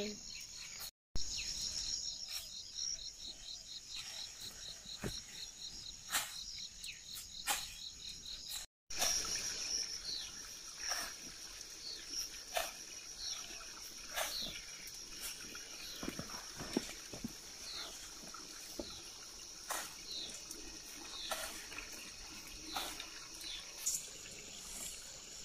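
Summer insects chirping steadily and high, a pulsing trill for the first several seconds, then a steady whine. Under them are irregular soft rustles and ticks as fertilizer is scattered among the corn plants by hand. The sound drops out briefly twice, about a second in and just before the middle.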